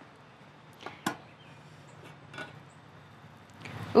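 Two light, sharp clicks about a second in and a fainter knock later: the aluminium lid of an Omnia stovetop oven being handled and lifted off its pan to check the bake.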